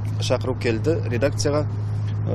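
A person speaking, with a steady low hum running underneath.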